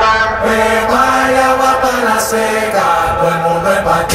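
Recorded dance music playing back: held, chant-like notes that step up and down in pitch over a light beat with little bass.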